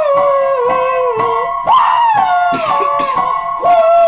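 A young man sings long, wailing held notes without words that slide downward in pitch, over a strummed acoustic guitar, with steady held tones underneath.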